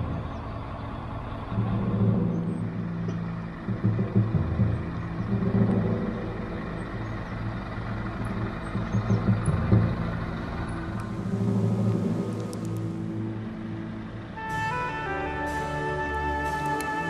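Diesel engine of an articulated lorry hauling a low-loader, running and pulling, its level rising and falling, with a brief hiss about eleven seconds in. Gentle string music comes in near the end.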